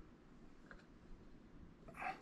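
Near silence with room tone and faint handling noises from the workbench: one light tick partway in, and a brief, louder rub or knock right at the end.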